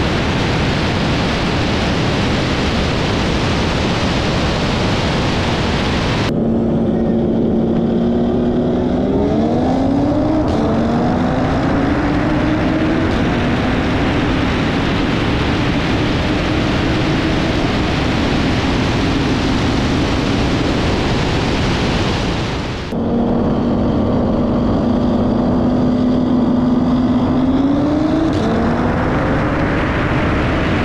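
Heavy wind roar on the microphone at high speed, cut abruptly to a car engine pulling hard under full acceleration: its note rises, drops back at an upshift and climbs again slowly. The wind roar cuts back in, then the engine note holds steady and rises again near the end.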